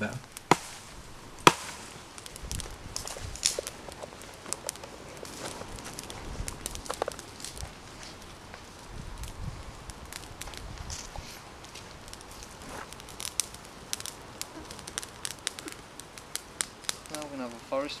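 Small campfire of pine twigs and fatwood kindling crackling as it catches, with sharp, irregular pops throughout.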